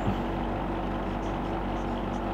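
Steady low hum and hiss of room background noise, with faint scratches of a marker writing on a whiteboard.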